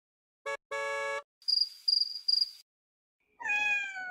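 Title-card sound effects: a short beep and a longer held horn-like tone, then three high ringing chirps, then a falling, meow-like call near the end.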